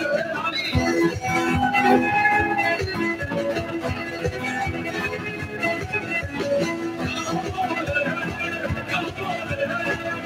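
Live band playing an instrumental passage through a PA: a violin carrying the melody over acoustic guitar and a steady drum beat.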